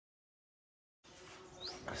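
Dead silence for the first second, then faint outdoor background noise with one brief rising high chirp, just before a man starts to speak.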